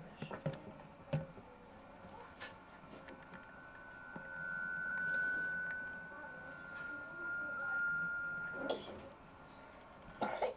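Audio feedback (microfonia) in a camcorder's sound: a single steady high whistle swells up about four seconds in, sinks slightly in pitch and cuts off near the end. It comes from the microphone being held too close. Faint knocks and room noise lie under it.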